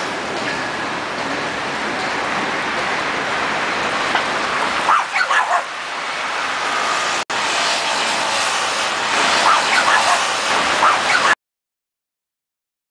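Busy city street noise: traffic and passers-by, with a few short dog barks about five seconds in and again near the end. The sound stops abruptly just before the end.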